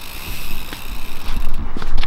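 Mountain bike being wheeled along a dirt trail, heard under heavy low rumbling noise on the microphone, with a couple of light clicks.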